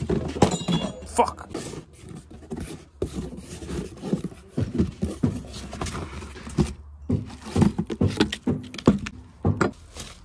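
A cardboard box being opened and unpacked by hand: an irregular string of rustles, scrapes and knocks as wrapped metal shifter parts and bubble wrap are pulled out and set down.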